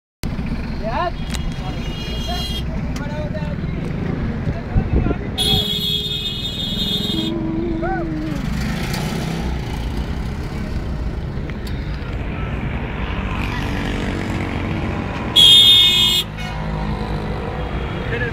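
Steady road and engine rumble inside a moving car's cabin, with high-pitched vehicle horn honks: a faint one near the start, a longer one about five seconds in, and the loudest, a short honk near the end.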